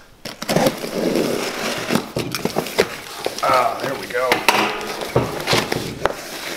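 Utility knife slitting the packing tape on a cardboard box, then the cardboard flaps being worked open: scraping and crackling of tape and cardboard with scattered sharp clicks.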